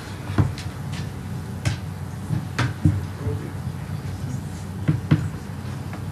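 Steady room hum with about six light knocks and clicks spread through it, from the iPad and its projector cable being handled.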